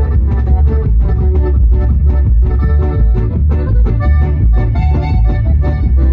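Live band playing loud, amplified regional Mexican dance music: guitar and drum kit over a heavy bass, keeping a fast, steady beat with no singing.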